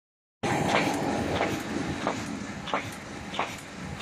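Semi-automatic paper bag making machine running, starting about half a second in: a steady mechanical noise with a sharp clack about every two-thirds of a second as the machine cycles.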